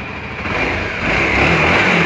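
Kawasaki Ninja 250 RR Mono's single-cylinder four-stroke engine running at idle, growing louder from about half a second in. The idle holds steady, which is taken as a sign that the engine is in good order.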